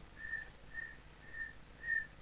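Four short, faint whistle-like tones at one high pitch, evenly spaced about half a second apart.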